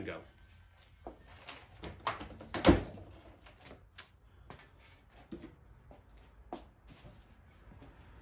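Scattered clicks and knocks of a plastic socket tray loaded with metal sockets being set down and a socket rail being handled. The loudest knock comes a little under three seconds in.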